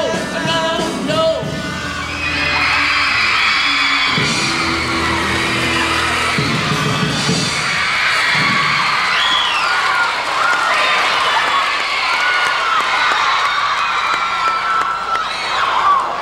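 A rock band's song ends in the first couple of seconds. A studio audience then keeps up loud screaming and cheering, with many high-pitched shrieks.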